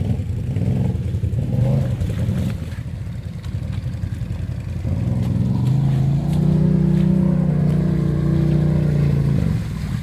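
Can-Am Renegade ATV's V-twin engine revving hard as the quad ploughs through a deep, muddy water puddle. The pitch climbs about five seconds in and holds high until just before the end.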